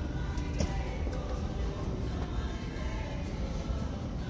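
Faint background music over a steady low rumble of room noise, with one light click about half a second in.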